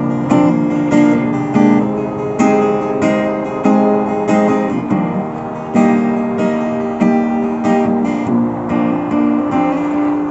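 Acoustic guitar played in an alternative folk song, chords struck in a steady rhythm with no singing.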